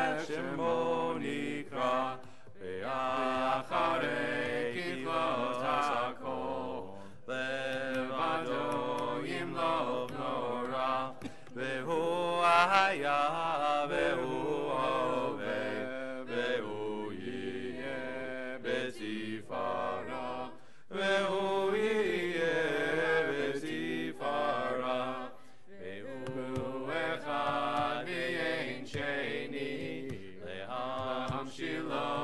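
Voices chanting a Hebrew prayer, a continuous melodic chant broken by a few brief pauses.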